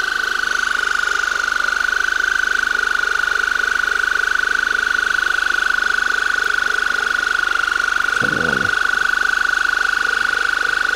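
Electric pulsed-water ear irrigator running, spraying water into the ear canal to flush out impacted earwax: a steady high-pitched whine with a quick pulsing flutter. A brief low sound comes in about eight seconds in.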